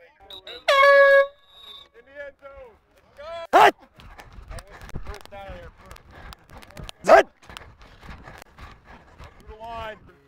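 A single air horn blast, one steady note of about half a second, about a second in. Scattered voices of players on the field follow, with two brief loud shouts later on.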